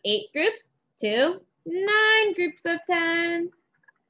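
A woman's voice in drawn-out, singsong speech, with two long held notes about two and three seconds in.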